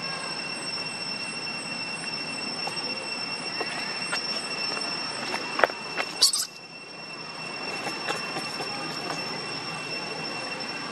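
A steady high-pitched whine held at two pitches, with scattered faint clicks and a short loud crackle about six seconds in.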